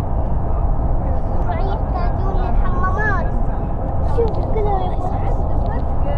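Steady road and engine rumble of a vehicle travelling at highway speed, heard from inside the cabin, with voices talking in the background.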